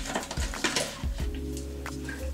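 Hairbrush strokes and hand rustling through a long straight human-hair wig: a few short, sharp brushing sounds. From about a second in, faint held tones of background music come in.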